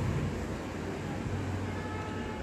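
Steady low rumbling background noise with a hum, with faint thin steady tones coming in near the end.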